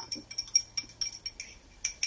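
A metal teaspoon stirring sugar into a glass of water, clinking against the inside of the glass in quick, ringing taps, several a second.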